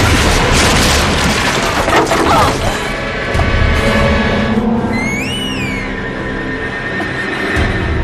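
Action-drama soundtrack: a loud crash of splintering wood as a body is thrown through a wooden lattice window, under dramatic music. About five seconds in, a single high sliding tone rises, holds and falls.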